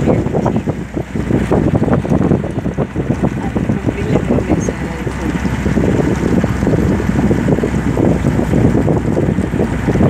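Wind buffeting the microphone in rapid irregular gusts, over a steady low rumble from the moving vehicle it is recorded from.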